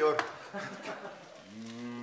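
A short bit of speech, then about a second and a half in, a single long, low, level-pitched moo-like call that holds steady.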